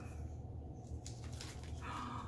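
A small cardboard box and its packaging being handled and opened, with faint clicks and rustles about a second in, over a steady low hum. A brief higher whine comes near the end.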